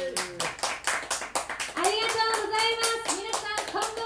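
A small audience clapping, the claps distinct and quick, as the last sung note of a live song dies away in the first half second. From about two seconds in, a voice speaks over the clapping.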